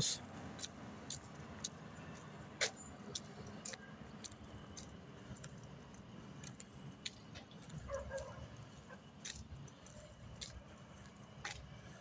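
Faint low rumble of travel along a road, with scattered small clicks and rattles at uneven intervals.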